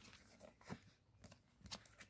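Near silence, with a few faint ticks and clicks of playing cards being handled and set down.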